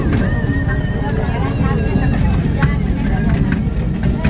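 Motorised odong-odong trolley train running, its open carriages rattling and clattering as it rolls along, with voices and music heard over it.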